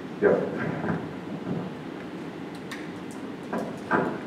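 Handling noise on a clip-on microphone: a loud rustling bump just after the start and another near the end, with faint clicks between.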